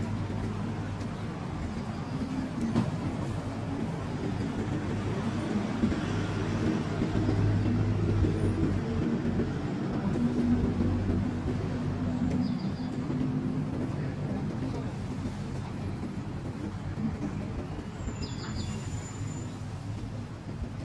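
Street traffic: a steady low rumble of car and bus engines and tyres on the road, swelling a little about halfway through as vehicles pass close by.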